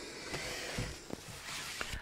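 Faint rustle of a stiff Peltex-backed fabric leaf being handled and slid over the sewing table, with a few light taps.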